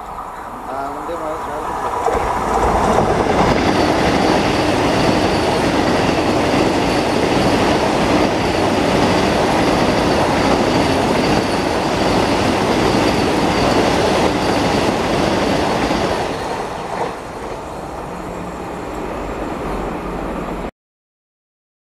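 Vande Bharat Express electric multiple unit passing close by at about 110 km/h. The rush of wheels on rail builds about two seconds in, stays loud and steady for some fourteen seconds as the coaches go by, then falls away near the end.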